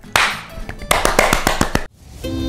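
Hands slapping together in a high-five, then a fast run of sharp claps that stops abruptly just before the end.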